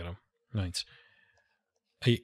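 A man's voice speaking: the end of a phrase, then one short word about half a second in, followed by a pause of near silence.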